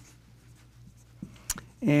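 Dry-erase marker writing on a whiteboard: faint strokes of the felt tip with a couple of small sharp clicks about a second and a half in. A man starts speaking right at the end.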